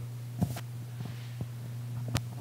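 A steady low hum, with a few faint, scattered clicks.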